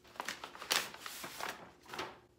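Brown kraft-paper bag rustling and crinkling as a hardcover book is slid out of it, loudest about two-thirds of a second in and dying away by halfway through.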